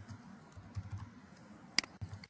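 Typing on a computer keyboard: a few faint key taps, then one sharper click near the end.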